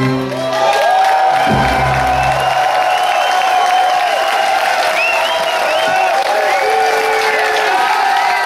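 The end of a ballad: the final chord dies away in the first couple of seconds while a long held note carries on, and the audience claps and cheers over it.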